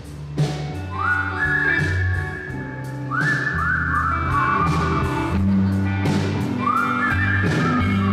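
Live rock band playing: drum kit with cymbals, bass guitar and electric guitar. Over it runs a high lead line of notes that each slide up and then hold, one about a second in, a quick run of several a few seconds in, and another near the end.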